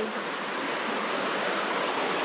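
Steady rush of a waterfall's falling water.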